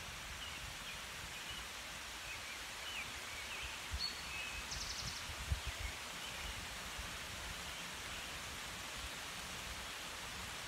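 Wet-forest ambience: a steady soft hiss with scattered short bird chirps and a brief rapid high trill about halfway through. A few low thumps from handling of the handheld camera come around the middle and are the loudest sounds.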